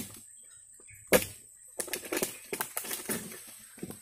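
A long pole-mounted harvesting sickle cutting into the crown of an oil palm: one sharp crack about a second in, then an irregular run of clicks and rustling of the palm fronds.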